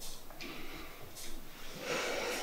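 A person's breathing: two short, faint breaths, then a louder, longer breath starting just before the end.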